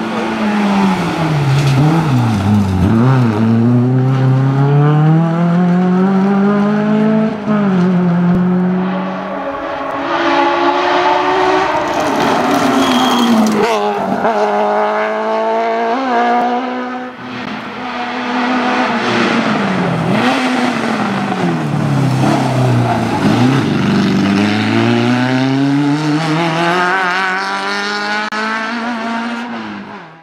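Racing car engines at full throttle on a hillclimb, revving hard through gear changes: the pitch repeatedly drops as a car lifts off for a bend, then climbs again as it accelerates away. Several cars pass in turn, and the sound fades out at the very end.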